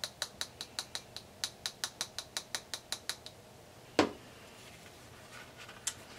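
Small plastic glitter jar shaken and tapped over a paper card to sprinkle glitter: a quick, even run of light ticks, about five or six a second, for about three seconds. A single sharper knock follows about four seconds in.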